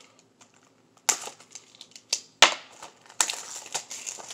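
Plastic shrink-wrap being picked at and peeled off a Blu-ray case: crinkling and crackling with scattered clicks, starting about a second in, with one sharp snap midway and denser crackling near the end.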